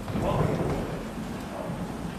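Low rumble of wheeled suitcases rolling along a carpeted floor, with footsteps, a little louder in the first half-second.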